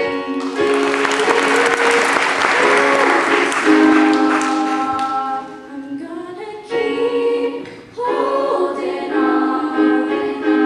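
Girls' choir singing sustained chords, with a burst of audience applause over the first half that dies away about five seconds in. The choir keeps singing, thinning briefly before coming back fuller near the end.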